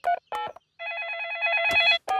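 Cartoon mobile phone sound effect: two short key-press beeps as a number is dialled, then a trilling electronic ring lasting about a second. The ring stops as the call is answered.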